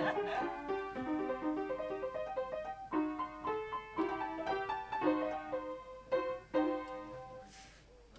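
Upright piano played solo: a tune of struck single notes and chords in short phrases with brief gaps. The last chord rings out and fades near the end.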